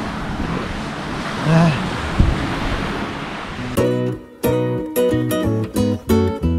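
Steady hiss of waves and wind on the shore with a single knock about two seconds in, then plucked acoustic guitar music starting near four seconds in.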